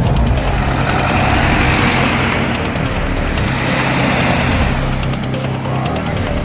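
A fire engine driving past, its engine and tyre noise swelling and then fading about five seconds in, with background music continuing underneath.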